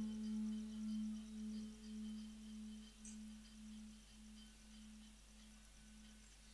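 A low note on a plucked drone string instrument, the desi veena used in Rajasthani bhajan, ringing on after the sung line and fading out slowly. It wavers in loudness about twice a second as it dies away.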